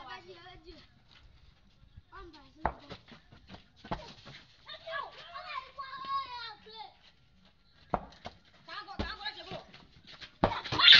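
Young children's voices calling and chattering during a ball game, with several sharp thumps of a ball being kicked on dirt, the loudest about three and four seconds in and again near eight and nine seconds.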